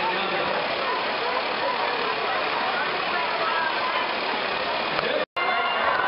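Loud, steady din of a crowd in a large arena hall: many overlapping voices and shouts. It cuts out abruptly for an instant a little past five seconds in, then resumes.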